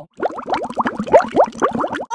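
Bubbling-water sound effect: a rapid run of short rising bloops, several a second.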